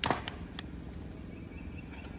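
A thin plastic Solo cup crackling with a few sharp clicks near the start as a tomato seedling's root ball is worked out of it. After that there is only a low, steady background hum.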